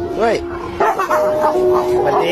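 A dog barking: one bark about a quarter second in, then a quick run of barks and yips from about a second in, over a steady background music tone.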